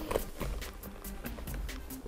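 Faint rustling and light clicks of a faux-leather backpack being handled as its flap is lifted open.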